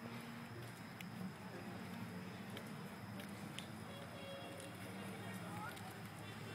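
Faint, indistinct voices of people talking at a distance, over a steady low hum, with a few light clicks.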